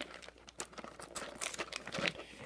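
Clear plastic wrapping on a trading-card box crinkling and crackling as it is handled, in quick irregular crackles.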